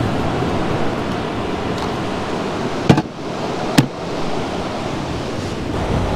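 Steady noise of ocean surf breaking on a sandy beach. Two short, sharp clicks come about three and four seconds in.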